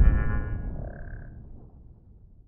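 Tail of a logo-sting sound effect: a deep boom fading away over about two seconds, with a brief high shimmer at the start and a short pitched blip about a second in.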